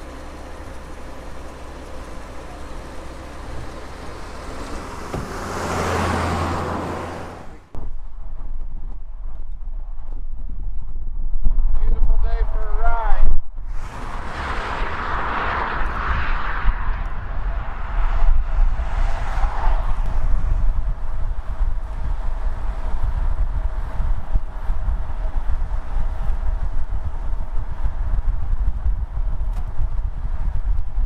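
Cars passing on a highway, each swelling and then fading, one about six seconds in and another around fifteen seconds in, with a steady low wind rumble on the microphone.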